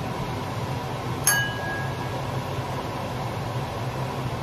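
A single metallic clink about a second in that rings briefly with a clear tone, over a steady low hum.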